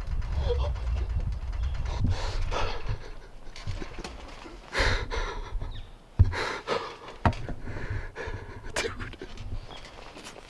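A man breathing hard in heavy, breathy pants about every two seconds: adrenaline right after shooting a big whitetail buck with a bow. A low rumble on the microphone for the first few seconds, and a sharp click about six seconds in.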